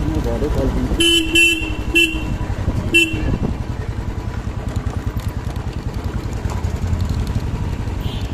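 Motorcycle engine running steadily while riding, with a vehicle horn tooting in short beeps: two quick ones about a second in, then one near two seconds and one near three seconds.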